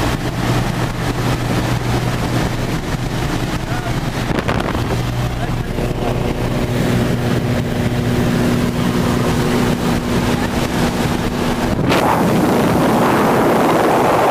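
Single-engine light aircraft's piston engine and propeller droning steadily inside the cabin during the climb. About twelve seconds in, the door is opened and a loud rush of wind takes over.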